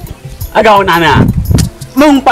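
Speech only: one voice speaks a short phrase of dialogue in Ewe, starting about half a second in.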